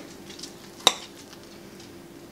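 A fork clicks once against a plate as it cuts into a serving of baked pineapple stuffing, over a faint steady hum.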